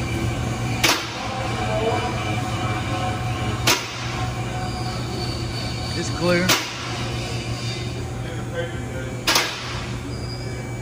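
A two-post car lift runs with a steady hydraulic pump motor hum. A sharp metallic clack of the lift's safety locks sounds four times, evenly spaced about three seconds apart, with faint squeals between them.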